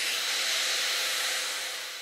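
Instrumental break in an electronic pop track: a wash of synthesized noise with a few faint held synth tones and no beat, slowly fading.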